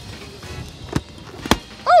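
Two sharp balloon pops, about a second in and half a second later, the second much louder, over background music.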